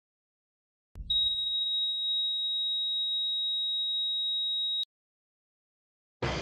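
Heart monitor flatline tone: one continuous high beep lasting nearly four seconds, then cutting off suddenly, the sign that the heart has stopped. A dull thump comes just before the tone starts.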